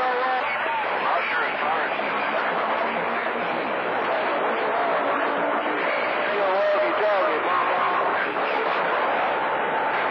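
CB radio receiver on channel 28 playing skip reception: steady static hiss with faint, garbled voices of distant stations fading in and out under it. A steady whistling tone comes in near the end.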